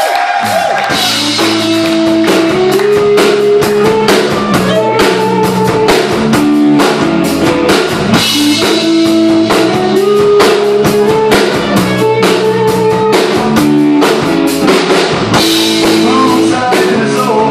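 Live rock band playing: electric guitars over a drum kit beat, a loud, steady riff that repeats about every seven seconds.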